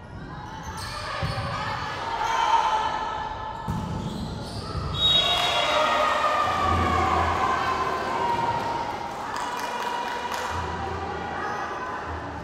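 Volleyball rally in a sports hall: the ball's hits and bounces echo, with players and spectators calling and shouting, one drawn-out call about halfway through.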